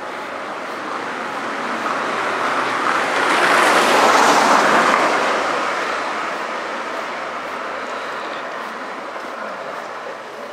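A small van passing close by from behind: its tyre and engine noise rises to a peak about four seconds in, then fades as it drives away down the street.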